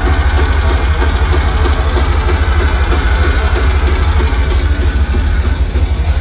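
Heavy metal band playing live, with distorted guitars over fast, dense kick-drum pulses that dominate the low end. The sound is loud and heard from within the crowd.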